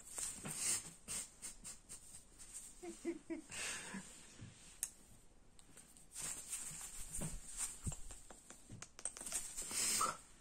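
Quiet, close rustling with scattered light taps and clicks as a crow moves about on a person's shoulder and clothing. A short, faint voice-like sound comes about three seconds in, and a louder burst of rustling comes near the end.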